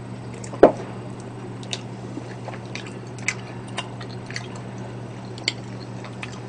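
Close-up wet chewing and mouth clicks of a person eating chewy tteokbokki rice cakes in sauce, small scattered smacks about every half second, over a steady low hum. A short knock stands out about half a second in.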